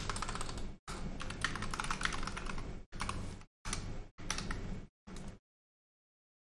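Typing on a computer keyboard: rapid key clicks in several short bursts, stopping a little after five seconds in.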